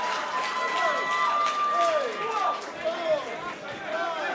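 Boxing crowd shouting and calling out, many voices at once, reacting to a knockdown; one voice holds a long note through the first couple of seconds.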